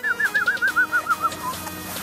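A bird singing a quick run of about ten clear whistled notes that step down in pitch, over steady background music.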